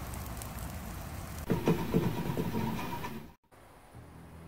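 Oil sizzling steadily around zucchini fritters frying in a pan, then a louder, uneven humming sound comes in about a second and a half in and lasts under two seconds before the sound cuts off abruptly.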